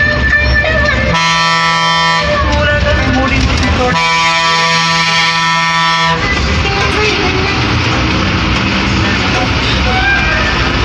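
Bus horn sounded in two long, steady blasts heard from inside the cab: one of about a second, then after a pause of nearly two seconds a longer one of about two seconds. The bus's engine and road noise run underneath.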